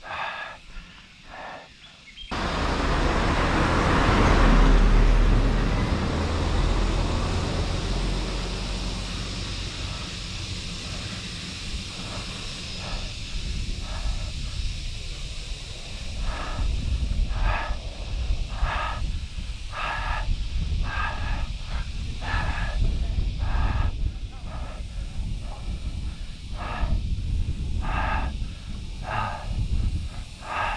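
Wind rumbling on a bike-mounted microphone: it starts suddenly a couple of seconds in and is loudest soon after. From about halfway, a cyclist's heavy breathing comes through, a hard breath roughly every second, from the effort of riding up a steep climb.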